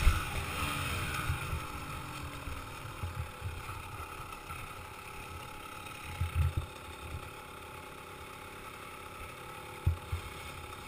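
Dirt bike engine slowing down, its pitch falling over the first couple of seconds as the throttle closes, then running quieter at low revs. A few low thumps come about six seconds in and again near the end.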